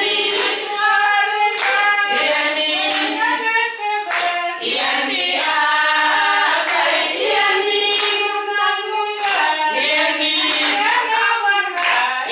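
A group of women singing together, with hand clapping.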